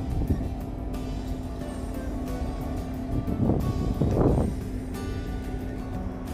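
Background music with a steady beat over a low rumble, with two short gusts of wind on the microphone a little past halfway.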